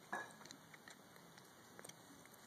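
A single short knock of a concrete brick being handled on a cinder-block support, followed by a few faint ticks; otherwise near silence.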